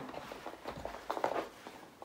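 Faint footsteps on carpet as people walk from room to room, a few soft scattered ticks.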